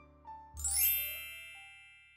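Chime sound effect: a few short soft notes, then about half a second in a bright bell-like ding with a rising sparkle on top that slowly rings away.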